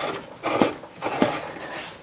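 A few light knocks with faint rubbing as a hand turns the handwheel of a shop-made wooden lathe tailstock to advance its screw-driven quill.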